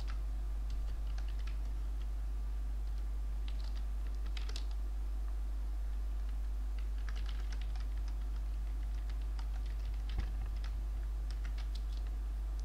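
Computer keyboard typing in irregular bursts of keystrokes with short pauses between them, over a steady low hum.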